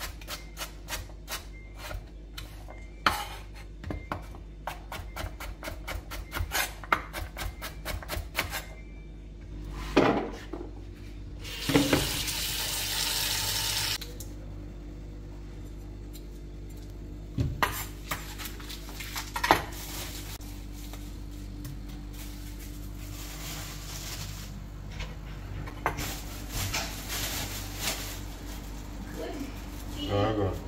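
Chef's knife slicing carrot into rounds on a bamboo cutting board: quick, even taps, about three or four a second, for the first nine seconds or so. After that come scattered knocks and a couple of seconds of rushing noise.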